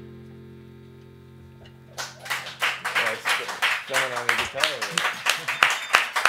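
The last chord of a small live band fades out, then about two seconds in a few people in the room start clapping, with voices over the applause.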